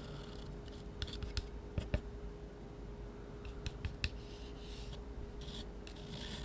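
Metal palette knife scraping and smearing thick paint across paper: soft, intermittent scrapes with a few small clicks of the blade, over a faint steady hum.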